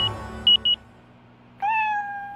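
A few short, high electronic beeps, then a cat meows once, a drawn-out meow starting about one and a half seconds in.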